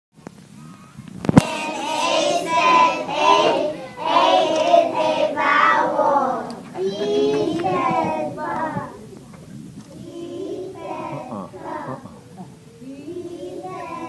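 A group of young children singing an alphabet song together, louder in the first half and quieter later. A single sharp click sounds just over a second in.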